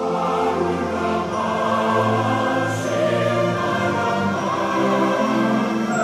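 An anthem performed by a choir and orchestra, played over loudspeakers. It moves in long held sung notes.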